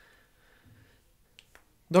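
A pause in a man's talk: near silence with two faint short clicks in quick succession about a second and a half in, then the man starts speaking right at the end.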